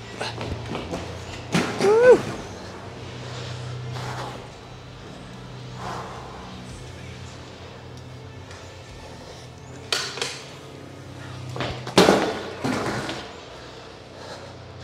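A 26-inch BMX freestyle bike clanking and knocking during flatland tricks, with two sharp knocks, about ten and twelve seconds in, louder than the rest. Low background music plays underneath.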